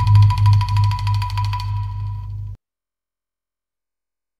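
Sundanese calung bamboo ensemble music on its closing bars: a loud, low held note that swells and fades in slow pulses, over a fast even run of ticks and a steady high tone. Everything cuts off suddenly about two and a half seconds in.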